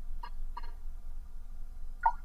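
A person drinking from a glass, with two faint gulps in the first second over a low steady room hum.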